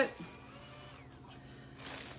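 The end of a spoken word, then a quiet pause with faint room tone and a low steady hum.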